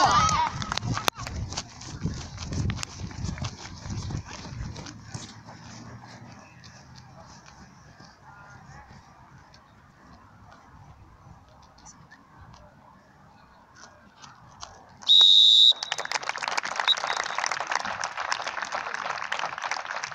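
A referee's whistle gives one short, loud blast about three quarters of the way in. Spectators start applauding straight after it.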